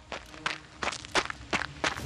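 Quick running footsteps, about three steps a second: a cartoon sound effect of someone hurrying away.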